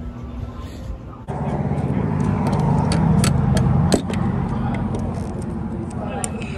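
A motor starts up suddenly about a second in and keeps running with a steady low hum. A run of sharp clicks sounds over it in the middle.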